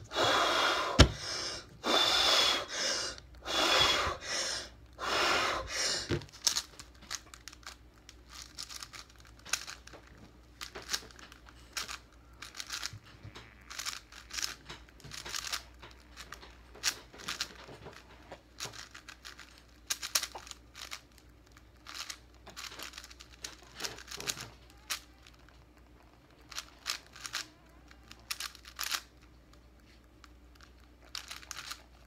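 A run of loud, deep breaths, about one a second, for the first six seconds, taken before the breath is held. Then the plastic layers of a 5x5 Rubik's cube are turned quickly by hand, clicking and clacking in rapid runs with short pauses between them.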